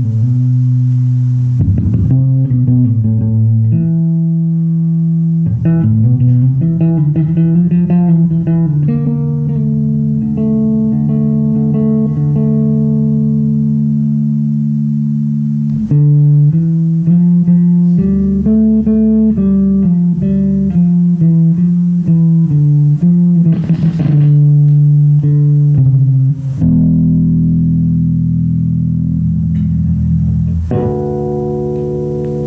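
Electric bass guitar playing a slow melodic line of long notes with slides between them, over held chords from the live band. A cymbal wash rises and fades a little over three-quarters of the way through.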